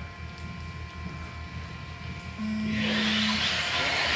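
A steady beep about a second long, starting about two and a half seconds in: the race start tone. Just after it, a pack of 1/10-scale 2wd electric buggies with 17.5-turn brushless motors pulls off the grid, giving a swelling whir of motors and tyres on carpet.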